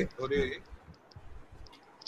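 A brief voiced sound from a person just after the start, then a few faint, short clicks.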